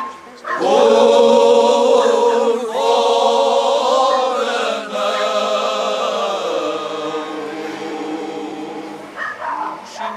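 Male choir singing cante alentejano unaccompanied, many voices together holding long, slow notes. The singing enters about half a second in, breaks briefly between phrases, and grows quieter toward the end.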